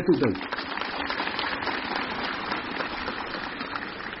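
A large seated crowd applauding steadily, a dense even clapping that eases off near the end.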